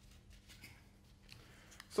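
Faint, light clicks and rustles of a clear plastic CPU clamshell tray being picked up and handled.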